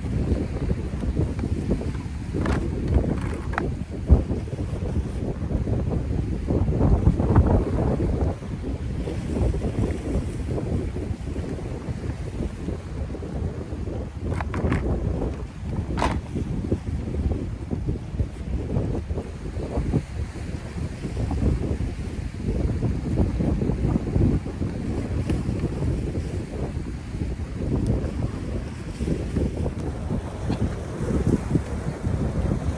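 Strong wind buffeting the microphone in a steady low rumble over the sound of surf on a rough sea, with a few short clicks.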